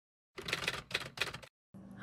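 Intro sound effect: a quick run of clicks, about a second long, like typewriter keys. It stops sharply, and a faint steady hum follows just before the end.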